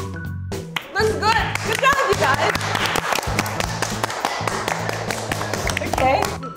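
Hand clapping and excited cheering voices start about a second in and carry on over background music with a steady bass line.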